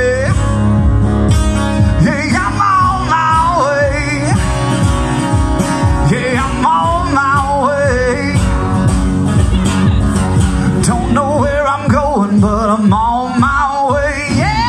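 Live country song: a man singing with a wavering, held melody over a strummed acoustic guitar, in three sung phrases with guitar between them.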